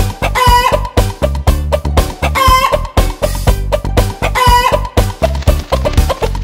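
Upbeat children's song backing with a steady beat, with a short chicken call sounding three times, about two seconds apart, in time with the music.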